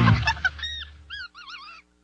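The theme music cuts off, followed by a few quick clicks and three short, high, squawking cartoon sound-effect calls. The first is held briefly, the second arches, and the last wavers up and down.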